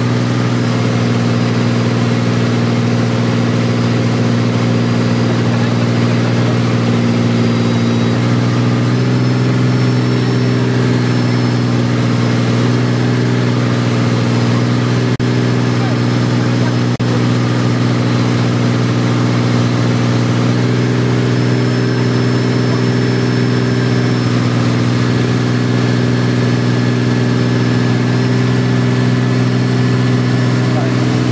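Tow boat's engine running steadily at speed, a constant hum that shifts slightly in pitch about nine seconds in.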